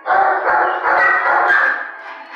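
Dogs barking in a shelter kennel: a loud run of overlapping barks lasting about a second and a half, stopping just before the end.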